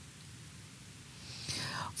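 A narrator's pause: low room hiss, then a soft intake of breath about a second and a half in, just before speaking again.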